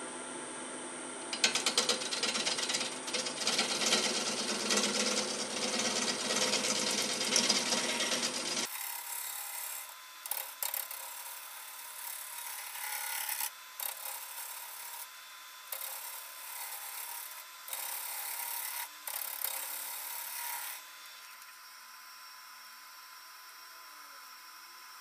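Gouge cutting into a sugar maple blank spinning on a wood lathe, wood shavings tearing off. The sound changes abruptly about nine seconds in and turns thinner, with the cutting coming in bursts that stop and start. The cutting stops near the end, leaving a faint steady hum.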